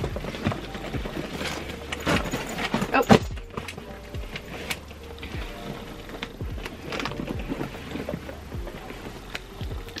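Mini backpacks being handled and swapped on a shelf: irregular knocks, clicks and rustling, the loudest knocks about two and three seconds in, under background music.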